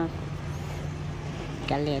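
A steady low rumble with a faint low hum fills a pause in a woman's speech; her voice returns near the end.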